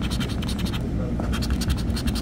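A scratch-off lottery ticket being scraped with a hand-held scratching tool, a run of quick strokes that grows thicker in the second half, as the coating is rubbed off the bonus boxes.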